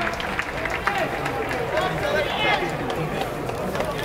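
Several people's voices talking and calling out over one another in an open ballpark, with scattered sharp clicks.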